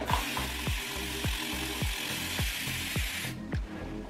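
Water spray bottle misting water onto hair in one long, steady hiss that stops a little over three seconds in.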